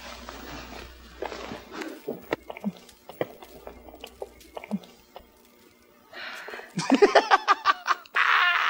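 A person laughing in a quick run of short bursts near the end, after soft breathy sounds and small scattered clicks.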